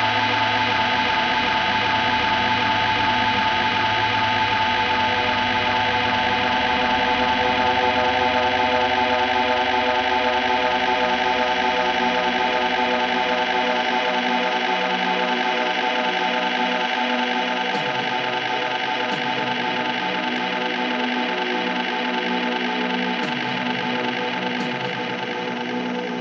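Sustained, effects-heavy drone of electric guitar and keyboard with no drums, a held chord closing out a live indie rock song. The lowest notes drop out about halfway through, leaving the higher tones ringing on.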